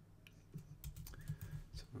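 Typing on a computer keyboard: a run of irregular key clicks beginning about half a second in, as code text is edited.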